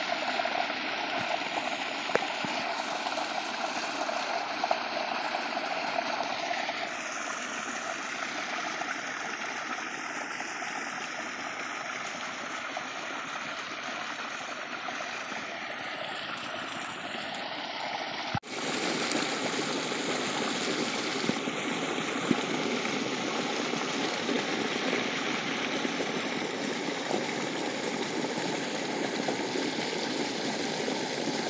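Water gushing out of an outlet into a concrete channel and rushing along it, a steady, even rush. There is a brief dropout a little past halfway.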